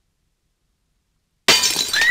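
Dead silence, then about a second and a half in a sudden, very loud crash that keeps ringing: a jump-scare sound effect in an animated cartoon.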